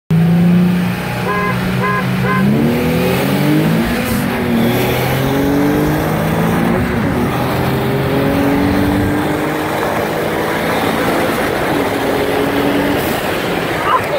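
Three short beeps, then car engines at full throttle, heard from inside one of the cars. The pitch climbs and drops back several times as the car shifts up through the gears in a roll race between a Nissan 370Z and a Mitsubishi Lancer Evolution.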